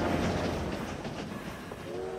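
A train clattering away along the rails, its rattle fading as it leaves the station.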